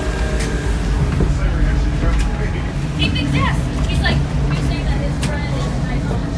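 Steady low rumble of shipboard machinery, with scattered clicks and knocks of handling and footsteps, and a few brief wavering high-pitched squeaks a little past halfway.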